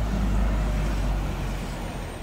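Road traffic rumbling steadily, with a bus running close by, easing off slightly near the end.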